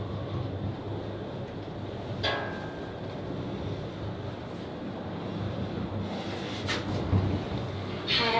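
Elevator car running: a steady low hum and rumble, with a brief higher-pitched sound about two seconds in and a short click late on.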